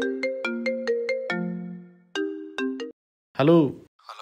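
Mobile phone ringtone: a plucked-sounding melody of quick notes, about five a second. It plays one phrase, starts a second, and cuts off suddenly as the call is answered.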